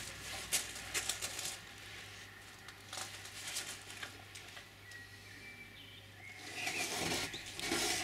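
Faint rustling and light scattered taps of a person shifting on and handling a foam seat, with a louder stretch of rustling near the end.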